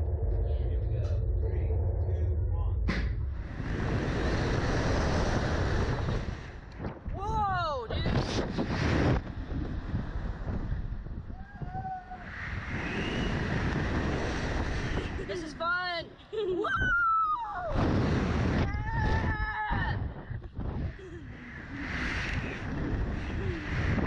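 Low steady machine hum of the Slingshot reverse-bungee ride while the capsule waits, then about three seconds in the capsule is launched. Wind then rushes over the onboard camera microphone in repeated surges as the capsule bounces and tumbles, with the children on board letting out rising and falling screams between the gusts.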